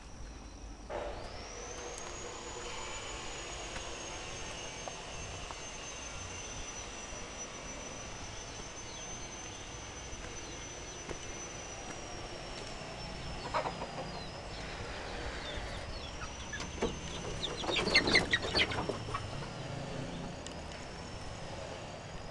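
A high, steady insect drone that wavers slowly in pitch, with chickens clucking and a short burst of crackling and rustling near the end.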